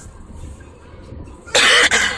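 One loud cough near the end, over the low steady rumble of road noise inside a moving car.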